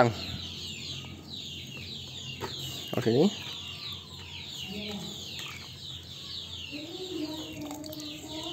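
Free-range village chickens (ayam kampung) clucking, over a steady run of short, high, falling chirps.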